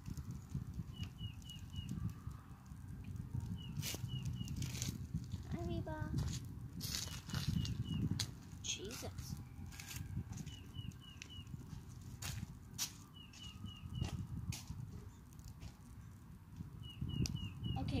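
A freshly lit wood and kindling fire crackles in a metal fire pit, with irregular sharp pops over a low steady rumble. A bird calls in short runs of three or four quick chirps, about six times.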